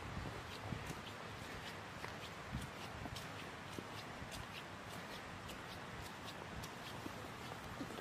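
Footsteps on a wet gravel path at a steady walking pace, about two steps a second, over a steady background hiss.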